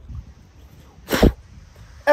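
A single short, sharp burst of noise about a second in, over a faint background hiss.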